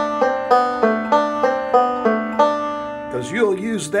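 Recording King M5 five-string banjo picked slowly and evenly, a melodic-style roll lick at about three notes a second, each note ringing on under the next. A man's voice starts talking about three seconds in.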